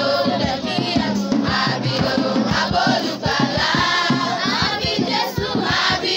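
Children's choir singing a Christmas carol together in unison, over a regular beat of low knocks, about three or four a second.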